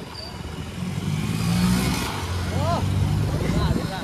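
Small motorcycle engine running under way, its pitch rising about a second in, with the hiss of tyres on a wet road.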